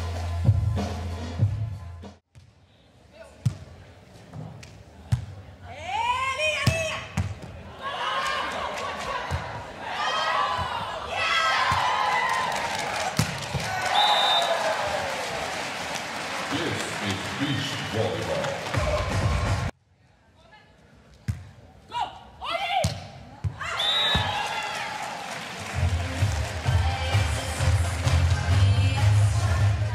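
Beach volleyball being struck hard, a series of sharp smacks, with loud shouts and cheering. The sound cuts out suddenly about two-thirds through and then resumes. Background music with a beat plays at the start and comes back near the end.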